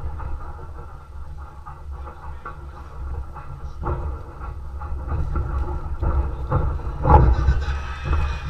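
Fight-hall ambience: a steady low rumble with scattered thumps from fighters moving and striking on the ring canvas, and a louder burst of noise about seven seconds in.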